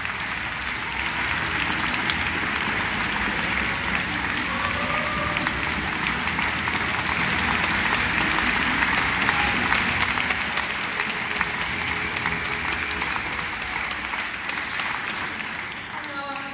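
Audience applauding in an indoor arena, a dense clatter of hand claps that swells through the middle and thins out near the end.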